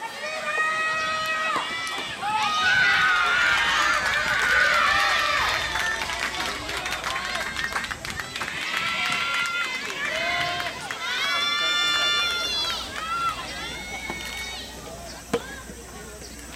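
Girls' high-pitched shouted cheers and calls, the spirited chanting typical of soft tennis between points, with one long drawn-out call a little after the middle. A single sharp pop near the end, as a ball is struck to restart play.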